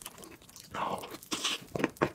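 Close-up mouth sounds of eating a spoonful of whipped-cream cake: chewing and lip smacking. Two short noisy bursts come about a second in and about a second and a half in, with a few sharp clicks near the end.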